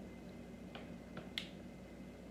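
Drinking water from a plastic bottle: a few faint gulping clicks over a quiet room, the clearest about one and a half seconds in.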